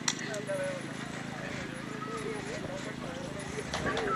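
Faint background voices of people talking at a distance, with a sharp click just after the start and another shortly before the end.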